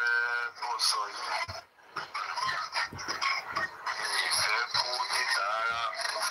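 A recorded voice message playing through a smartphone's speaker: a man talking, with a brief pause about a second and a half in.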